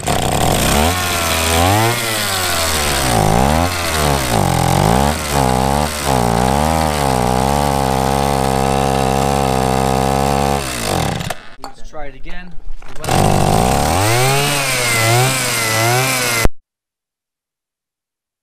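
Go-Ped scooter's small two-stroke engine running on sprayed-in carb cleaner, revving up and down for about ten seconds, then sputtering and nearly dying. It catches and revs again for a few seconds before the sound cuts off abruptly as the recording's audio drops out.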